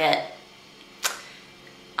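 A single sharp click about a second in, dying away quickly, in a quiet pause between a woman's words.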